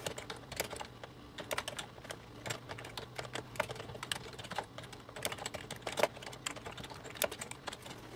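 Typing on a computer keyboard: irregular key clicks, a few strokes a second, as words are typed out.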